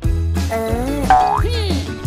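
Playful background music with a cartoon boing sound effect, a quick rising springy sweep a little after a second in.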